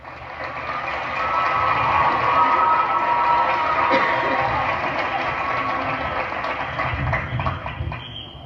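Stadium crowd applauding and cheering after a marching band number, a steady wash of clapping and voices.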